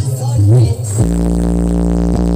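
Electronic dance music played very loud through a large outdoor sound system of stacked speaker cabinets. The first second is a wavering, pitch-bending pattern; then, about a second in, a deep bass note sets in and is held steady.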